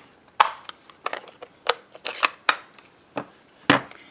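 Small plastic clicks and taps: a Stampin' Pad ink pad's plastic case being handled and a small clear acrylic stamp block tapped onto the pad and pressed down on cardstock. About ten irregular sharp taps, the loudest near the end.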